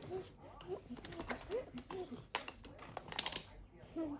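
Wooden stacking rings clacking against each other and the wooden peg as they are slid back onto the stacker, a run of light irregular knocks with the loudest cluster a little past three seconds in.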